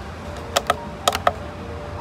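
A handful of light, sharp clicks, about five within a second, from the wire hanger of a hanging driftwood orchid mount being handled and unhooked.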